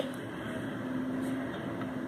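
A steady, even background hum with a faint constant tone and no distinct events.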